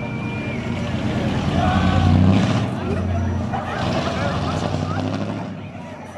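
Chevrolet pickup truck's engine pulling away, its low sound swelling to its loudest about two seconds in and then easing off. Several people's voices call out and whoop over it.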